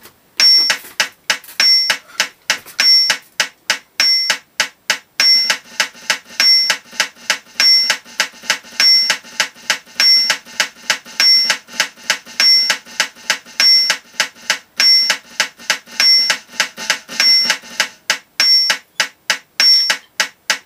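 Drumsticks playing a fast, even run of strokes on an electronic drum kit's snare pad. Over it a metronome beeps at 200 beats per minute, its high accent beep coming once a bar.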